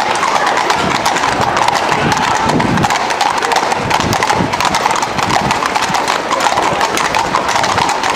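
Hooves of several mounted police horses trotting on an asphalt street, many overlapping clip-clop strikes in a dense, irregular clatter.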